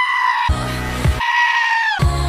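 A goat's long, yelling bleat spliced into a pop song's bass-heavy drop in place of the sung vocal: one held cry ending about half a second in, a short burst of the song's beat, then a second held cry from just past a second in.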